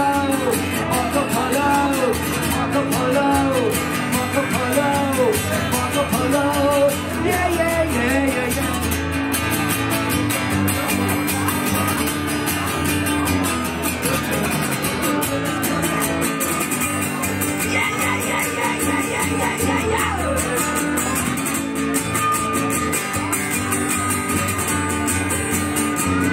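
Two acoustic guitars strummed and picked together in an instrumental break of a live acoustic duo song. A wordless voice rises and falls about once a second during the first several seconds.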